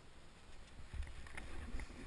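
Snowboard sliding and scraping over snow, with a low wind rumble on the camera microphone that grows louder about a second in and scattered crunchy crackles.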